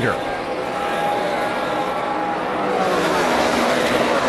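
V8 engines of several NASCAR Sprint Cup cars running at high revs as a pack races together, a steady sustained engine drone.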